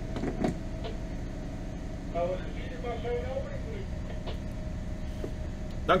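A muffled voice answering over a VHF radio speaker about two seconds in, the bridge operator replying to the skipper's call. Under it runs the steady low hum of the boat's running engine.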